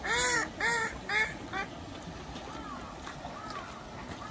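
Mallard duck quacking: four loud quacks in quick succession, each shorter than the last, followed by a few fainter quacks.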